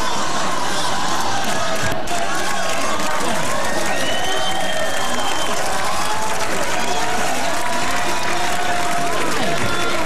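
Studio audience cheering, shouting and applauding without a break, many voices yelling over one another.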